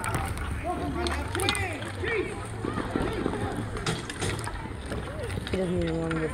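Several voices calling and shouting across an outdoor ball hockey rink during play, overlapping throughout, with a few sharp clacks.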